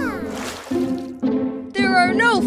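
Children's cartoon background music with a steady held note, and a brief splash about half a second in. A cartoon character's voice comes in near the end.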